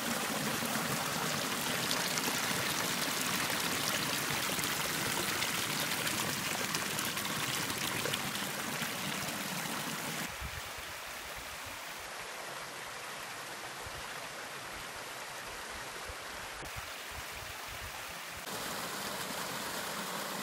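Small moorland stream splashing steadily over rocks in a little waterfall into a pool. About halfway through the sound drops to a quieter, gentler flow of water along a narrow rock channel, then grows a little louder again near the end at another small cascade.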